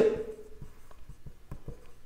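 Marker pen writing on a whiteboard: faint, irregular short strokes of the felt tip on the board.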